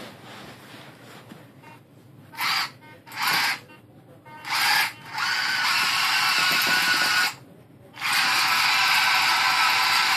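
Rover 5 tracked chassis' electric gear motors whining as it drives: three short bursts, then two longer runs of about two seconds each.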